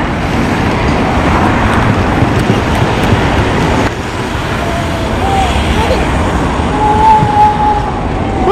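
Road traffic running past, a steady rush with a low rumble.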